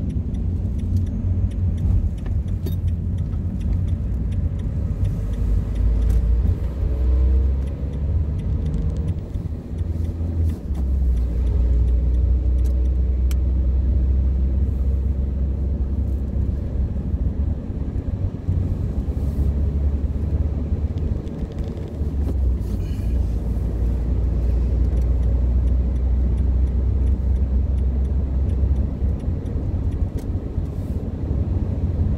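Car engine and tyre noise heard from inside the cabin while driving: a steady deep rumble, with the engine note climbing as the car accelerates onto the motorway and a brief dip about ten seconds in.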